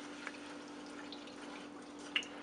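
Silicone spatula stirring milk into a butter-and-flour roux in a metal saucepan: faint liquid sloshing and a few soft ticks of the spatula against the pan, over a steady low hum.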